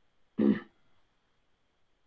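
A man clearing his throat once, briefly, about half a second in.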